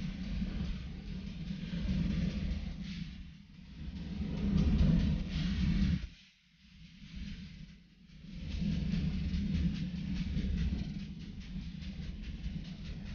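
Wind buffeting the microphone of a camera on a moving bicycle: a low, uneven rumble with a fainter hiss above it, dropping away briefly a little past halfway.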